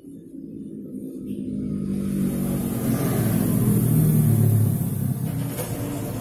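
A low engine rumble that grows louder over the first three or four seconds, then holds steady.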